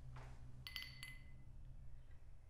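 A short rustle, then a quick cluster of light clinks from small hard objects, metal or glass, with a brief bright ringing that fades within about half a second, over a low steady hum.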